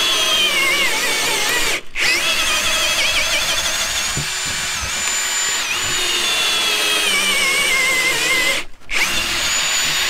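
Ryobi cordless drill, held plumb in a Milescraft Drill Mate guide, boring a hole into an ambrosia maple shelf. The motor whine drops in pitch as the bit loads up in the wood, with two brief stops, about two seconds in and near the end.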